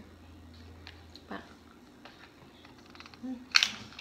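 Quiet handling of snack packaging: faint clicks and light rustles of a plastic candy wrapper and a small cardboard box, with one short, sharp rustle near the end.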